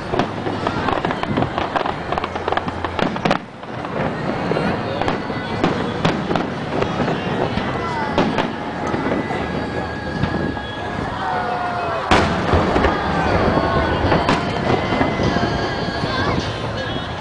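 Aerial fireworks shells bursting and crackling in quick succession, with the sharpest, loudest bang about twelve seconds in.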